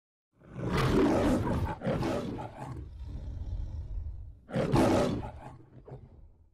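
The MGM logo's lion roar: two roars close together starting about half a second in, a quieter stretch, then a last loud roar about four and a half seconds in that fades away.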